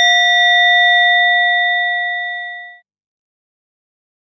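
A single bell, struck just before, rings on with clear, steady tones that slowly fade, then cuts off abruptly a little under three seconds in. It is the bell that marks the one prostration after each Buddha's name is called.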